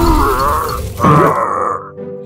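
Cartoonish grunting and groaning vocal sound effect: a wavering cry that trails off, then a second one about a second in that drops sharply in pitch.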